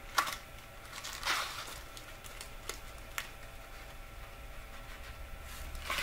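Light handling noise from an incense stick and its box being picked over: a sharp click just after the start, a short rustle about a second in, two small clicks in the middle and another rustle near the end, over a faint steady hum.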